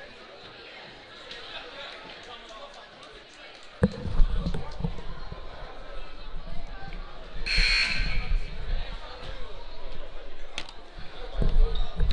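Gymnasium ambience of crowd chatter, with low thumps of a basketball bouncing on the hardwood court from about four seconds in. A little past halfway, a short electronic scoreboard buzzer sounds once for under a second.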